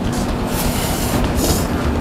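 Steady rumbling background noise with a constant low hum.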